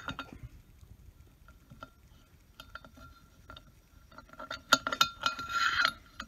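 Steel bolt and nut sliding and clinking in a T-slot of an aluminum slide table. A few light scattered clicks at first, then a quick run of louder, ringing metallic clinks near the end.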